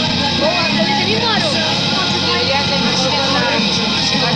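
Background music: a song with a sung voice, running at a steady loudness.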